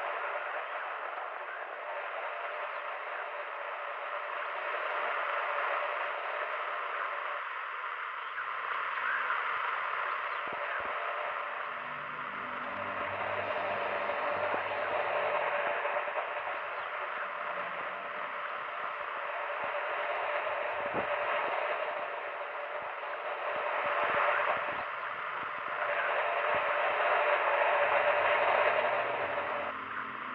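Old-time radio static: a thin hiss that swells and fades in slow waves, with a faint steady whistle tone, and faint low tones underneath from about eleven seconds in.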